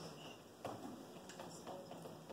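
Quiet classroom room tone with a few faint clicks and taps, the clearest about a third of the way in.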